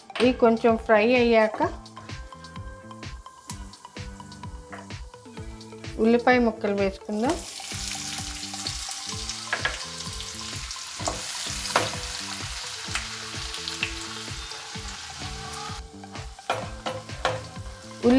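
Chopped onions frying in hot oil with whole spices in a nonstick kadai. A loud sizzle starts suddenly about seven seconds in and eases off near the end, as the onions are stirred with a wooden spatula.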